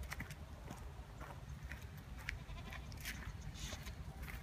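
Baby domestic goats bleating faintly, over a low rumble of wind or handling noise.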